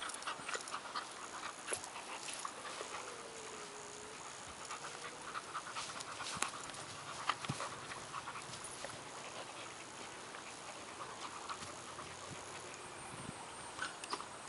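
Dogs panting as they play tug with a rope toy, with scattered small clicks and rustles from the rope and grass.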